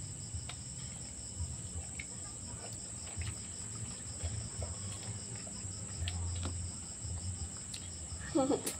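Crickets chirping steadily in the background, a continuous high trill with a quick even pulse, over a low hum. Faint scattered clicks of chewing and handling food come through now and then.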